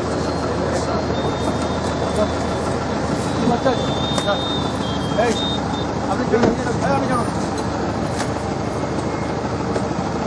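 Roadside traffic noise, a steady rush of passing vehicles, with indistinct voices talking over it.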